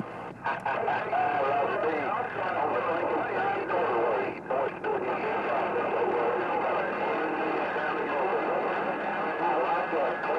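A distant station's voice coming in over a President HR2510 transceiver's speaker, muffled and hard to make out under a steady hiss of static.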